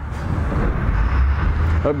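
2012 Harley-Davidson Street Glide's air-cooled Twin Cam V-twin idling steadily through its Cobra aftermarket exhaust, a low even rumble.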